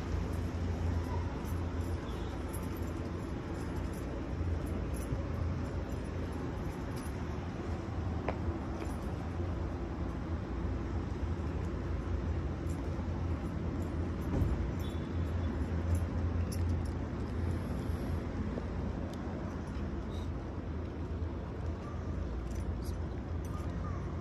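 Steady low rumble of road traffic in the open air, with wind buffeting the phone's microphone.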